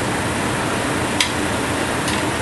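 Steady rushing noise of a commercial kitchen's ventilation running, with a single sharp click of metal tongs against the pan a little past a second in.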